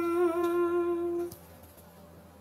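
A sung voice holding the song's final note as a steady hum, wavering slightly before stopping about one and a half seconds in.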